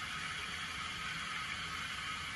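Steady hiss of a hot water tap left running.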